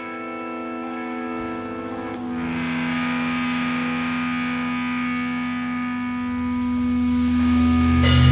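Sludge metal band live in the studio: distorted electric guitar and bass hold long, ringing chords through an effects unit with echo, with no drums. About two seconds in the chord changes to a fuller, more distorted one, and the sound builds louder near the end.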